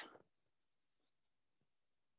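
Near silence, with a few faint chalk taps and scratches on a blackboard from about half a second in to just past a second.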